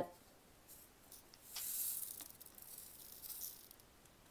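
A faint, high rustle with a few light ticks, swelling for about two seconds from around a second and a half in: diamond-painting supplies being handled at the work table.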